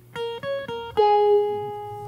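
Guitar picking the opening of a song: three quick single notes, the middle one higher, then a lower note about a second in that rings out and slowly fades.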